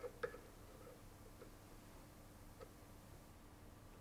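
Near silence: room tone with a faint steady hum. A few faint clicks, about a second apart, come from a hand tool working the key off the pump shaft.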